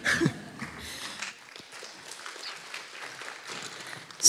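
Light, scattered applause from an audience, faint and even, with a brief laugh at the very start.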